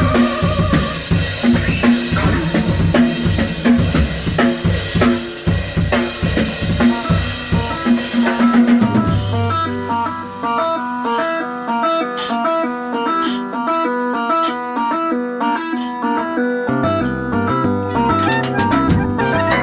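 Instrumental avant-jazz trio music. A busy drum kit with snare, bass drum and rimshots plays for about the first nine seconds. The drums then thin to sparse high taps under a repeating stepped melodic figure, and a low bass line enters near the end.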